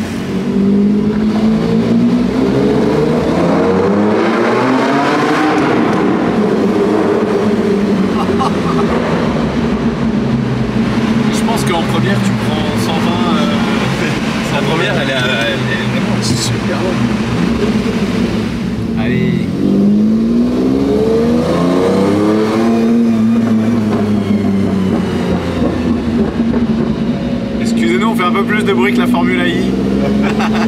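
Lamborghini Diablo's V12 heard from inside the cabin, revving up through the gears and easing off twice, with steady running in between, and pulling up again near the end.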